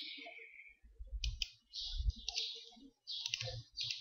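Faint, irregular clicking of a computer mouse and keyboard at a desk.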